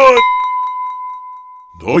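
A single high ringing tone, a cartoon sound effect, holds steady and fades away over about a second and a half. It follows the tail of a shout at the start, and a man's voice cuts in near the end.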